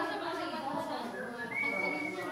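Indistinct chatter of several people in a large hall, with a high, steady note held for about half a second near the end.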